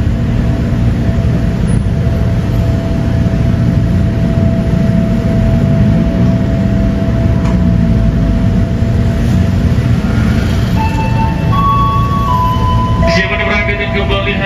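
Steady low rumble of an electric commuter train at a station platform, with a steady hum that fades about eight seconds in. Near the end a few short electronic tones sound, then a voice begins.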